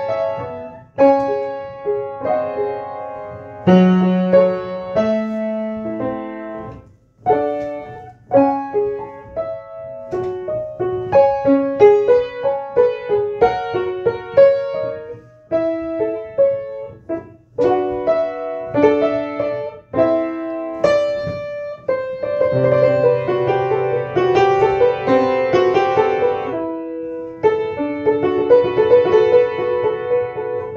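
Solo piano improvisation: phrases of single notes and chords separated by brief pauses, growing fuller with held bass notes from about two-thirds of the way in.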